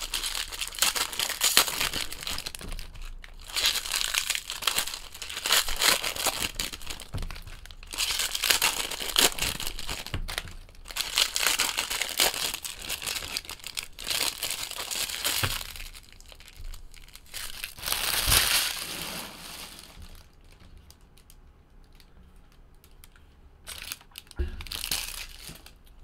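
Foil baseball-card pack wrappers being torn open and crumpled by hand, in repeated crinkling bursts, with a quieter pause shortly before the end followed by one more burst.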